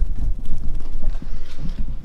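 Irregular low thumps and rumble from a handheld camera being swung around and carried, its microphone picking up handling knocks and footsteps.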